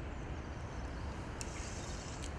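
Steady light wind rumble on the microphone with an even hiss, and one short sharp click about one and a half seconds in.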